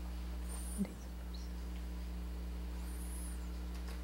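Low steady electrical hum with no speech. A faint click comes about a second in, and two faint high-pitched warbling chirps come, one near the start and one about three seconds in.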